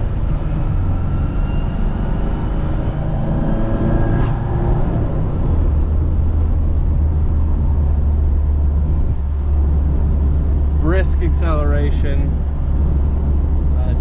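Classic Mini's A-series four-cylinder engine heard from inside the cabin, pulling up through the revs for about four seconds, then settling into a steady low drone with road noise as it cruises. A single click sounds about four seconds in.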